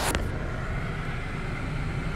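Steady low rumble and hiss of background noise in a pause between spoken phrases, with a short click right at the start.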